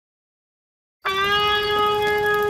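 Silence, then about a second in a single steady held tone with many overtones starts abruptly and holds at one pitch.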